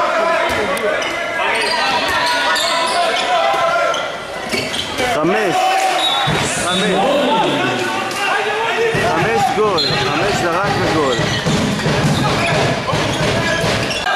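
A handball being bounced on a wooden sports-hall court during play, with players shouting and calling to each other. The hall is echoing.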